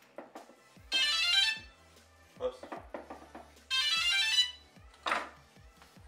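DJI Phantom FC40 drone sounding its electronic power-up tones: two quick runs of stepped beeps, each under a second long, about three seconds apart, as it is switched on after repair.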